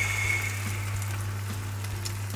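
Batter sizzling as it is poured into hot oil in a nonstick frying pan: a steady hiss, with a thin high note that fades out in the first second.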